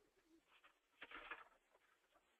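Near silence: faint room tone on an open microphone line, with one brief faint noise about a second in.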